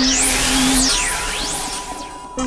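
Experimental electronic synthesizer music: noisy sweeps glide up high, hold, then fall and rise again, over a steady low drone that drops out about a second in.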